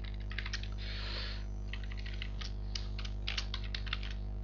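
Computer keyboard typing: an irregular run of key clicks, with a short hiss about a second in, over a steady low electrical hum.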